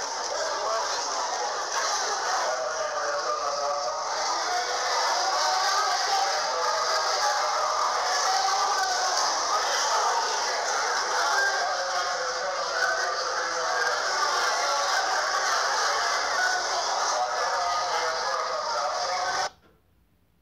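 Din of many voices at once in a large chamber, a dense babble with no single speaker standing out, cutting off abruptly near the end.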